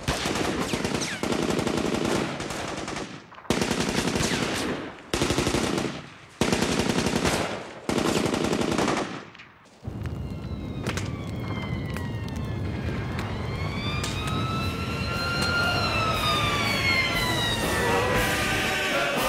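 Automatic gunfire in about five long bursts, followed from about halfway through by a wailing siren that falls, rises and falls again over a steady low rumble.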